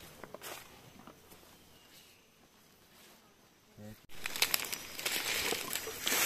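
Quiet forest for the first few seconds, then, after an abrupt change about four seconds in, rustling and crunching of dry leaf litter and undergrowth as someone moves through it.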